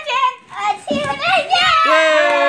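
Children's excited voices calling and chattering, with a long held high call starting near the end.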